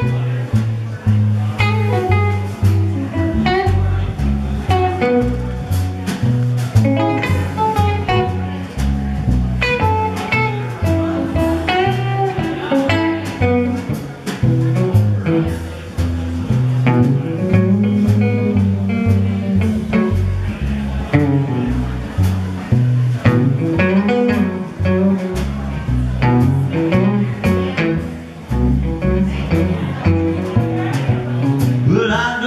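Live blues trio playing an instrumental passage: electric guitar taking the melody over upright bass and drums.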